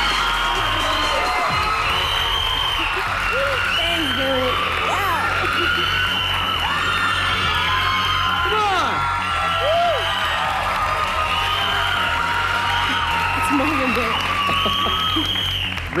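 Toy whistles blown again and again over a studio audience cheering and applauding, with a music bed that has a steady low pulse running underneath.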